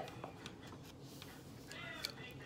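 Quiet handling and opening of a plastic eyeshadow palette case, with a few faint clicks, and a faint short high-pitched call near the end.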